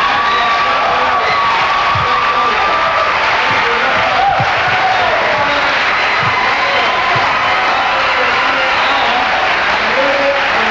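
Studio audience applauding and cheering steadily, with a few voices calling out over it.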